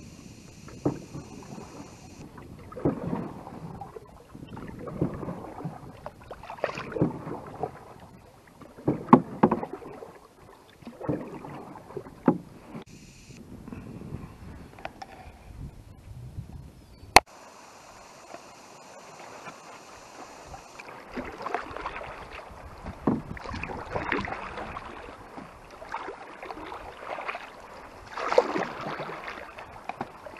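Canoe paddle strokes in lake water: a swish and splash every second or two as the blade is pulled through and lifted out. A single sharp click cuts in a little past halfway.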